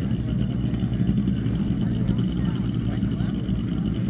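A steady, low engine drone with a fine regular pulsing, over faint talk from people around.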